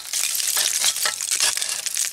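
Short-handled digging tool scraping and picking through packed dump dirt full of broken glass and trash: a continuous crunching, crackling rattle of soil and shards.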